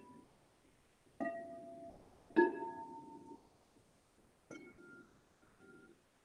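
Clear crystal singing bowls struck with a mallet: three strikes, each a different pitch, each ringing briefly and fading.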